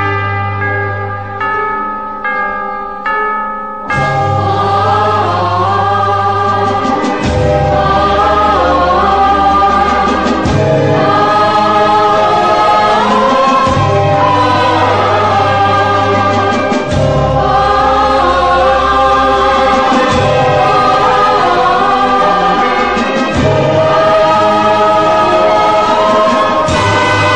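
Old Hindi film song music: short brass chords for the first few seconds, then a chorus of voices with orchestra over a steady bass line.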